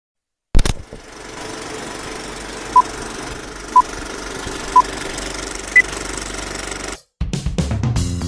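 Film-leader countdown sound effect. A sharp hit opens a steady film-projector rattle and hiss, with three short beeps at one pitch about a second apart and a higher final beep. The rattle cuts off about seven seconds in and music starts.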